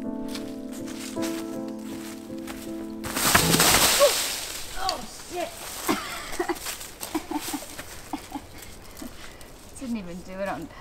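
Background music that cuts off about three seconds in for a sudden loud crash of a hiker tripping and falling onto a slope of dry leaves, followed by her short pained groans and gasps.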